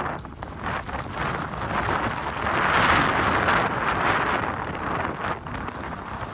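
Skis carving turns on groomed snow: a scraping hiss from the edges that swells and fades with each turn, every second or two. Under it is the low rumble of wind on the microphone.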